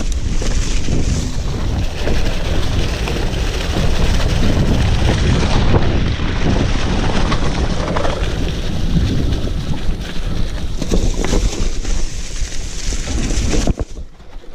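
Wind buffeting the action camera's microphone as a mountain bike rolls fast down a leaf-covered dirt trail, with the tyres on the ground and knocks and rattles from the bike in a steady loud rumble.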